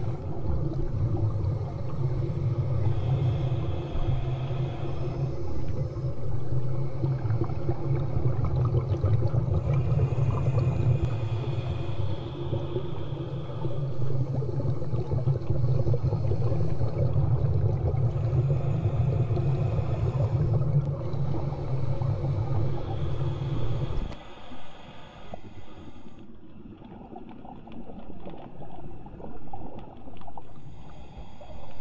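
Muffled underwater sound of a person breathing through a snorkel: a steady low rumble with a hissing breath every several seconds. The rumble drops away suddenly about four-fifths of the way through, leaving fainter water sounds.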